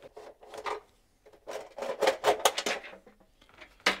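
Plastic front cover of a domestic consumer unit being unclipped and pulled off, rattling and scraping, with a sharp click near the end.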